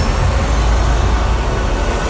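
A loud, deep rumble with a hiss over it, starting suddenly: a dramatic sound effect laid into a TV drama's soundtrack.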